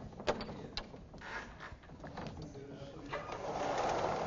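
Sliding classroom blackboard panels being handled: a few sharp knocks and clicks in the first second, then a swelling rumbling rush near the end as the panel is pushed along its frame.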